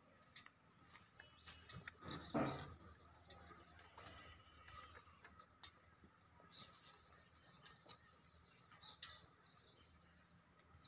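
Faint outdoor quiet with scattered small bird chirps, mostly in the second half. One brief louder noise comes about two and a half seconds in.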